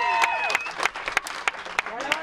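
A small group of people applauding: scattered, uneven hand claps.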